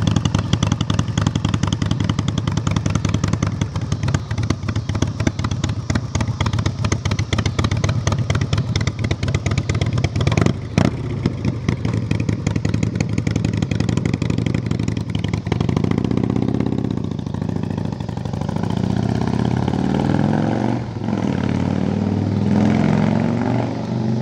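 Custom Harley-Davidson Softail chopper's V-twin engine idling with a rapid, even pulse, with one clunk about ten seconds in. From about two-thirds of the way through it revs and rides off, its pitch rising and falling several times.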